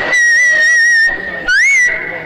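A high, steady whistle held for about a second and a half, then a short whistle that rises and falls near the end.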